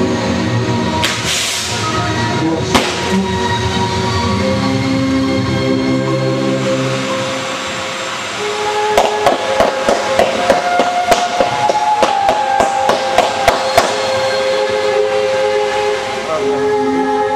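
Fireworks display over music: a ground fountain hisses, then from about halfway a rapid run of sharp cracks, about three a second, goes on for some five seconds.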